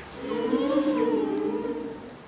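Mixed choir singing a cappella: a held chord of several voices that swells in, sways slightly in pitch and fades away near the end.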